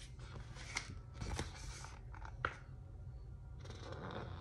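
A large hardcover picture book being handled as its page is turned and the open book is lifted: soft paper rustles with two small sharp ticks, one about a second in and one past the halfway point.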